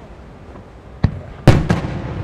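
Japanese aerial firework shells bursting: one sharp bang about a second in, then a louder burst half a second later with a few quick cracks right after it, dying away slowly.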